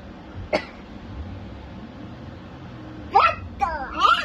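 A girl's short, loud wordless vocal exclamations in quick succession near the end, with pitch falling. A single faint click about half a second in.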